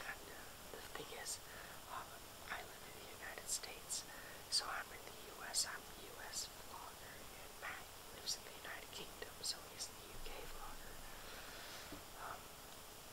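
A person whispering, voiceless speech with sharp hissing 's' sounds.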